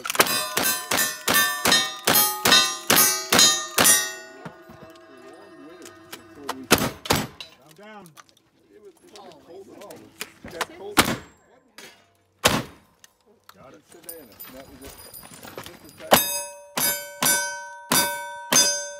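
Black-powder gunfire on steel targets: a rapid string of revolver shots, each with the ring of hit steel plates, over the first four seconds. Then three single, louder shotgun blasts spread out through the middle, and another quick string of shots with ringing steel near the end.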